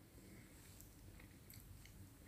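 Near silence, with a few faint clicks in the second half.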